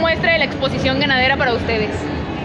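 A woman speaking over a steady background din; her talk stops shortly before the end.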